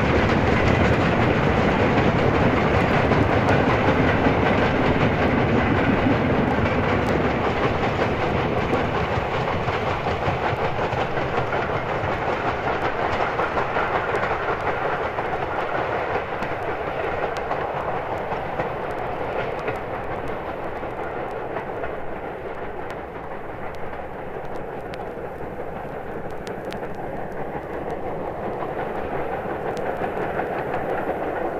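Steam-hauled train running past, its carriage wheels clattering over the rail joints, the sound gradually fading as it draws away.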